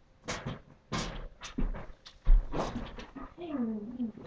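An animal calling: several short, sharp calls in a row, then a falling whine near the end.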